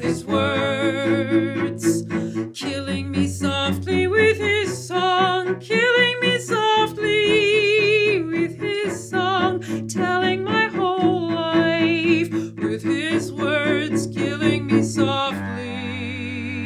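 A mezzo-soprano singing a slow ballad with strong vibrato, accompanied by a cello playing low held notes. Near the end the voice stops and a held chord rings on.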